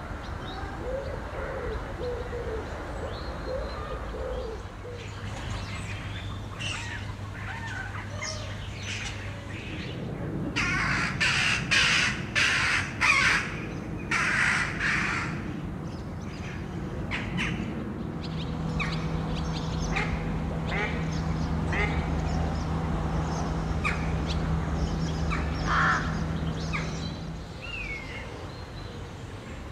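Birds calling in the open air, with a run of about six loud calls close together midway through and shorter calls scattered before and after. A low steady hum sits underneath.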